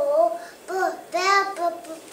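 A young child's voice reciting a phonics drill in a sing-song chant, sounding out letter sounds and their keyword words (lamp, bell) in short repeated phrases.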